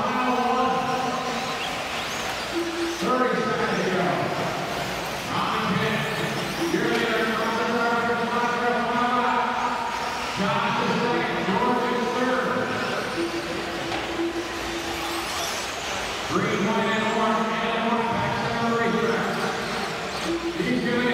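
A race announcer's voice over an arena PA, echoing in the hall, in phrases of a few seconds with short pauses, over steady background noise from the arena.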